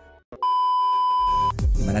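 A single electronic beep, a steady high tone about a second long, followed by music with a low bass coming in.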